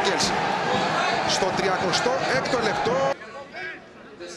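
Stadium football crowd shouting with many voices at once after a shot on goal, cutting off abruptly about three seconds in to a much quieter crowd background.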